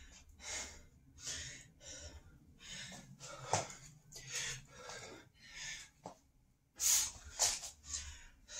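A man breathing hard through a set of navy seal burpees, with short forceful breaths at about one and a half a second. The breathing pauses briefly near the end, then comes back with a pair of louder breaths.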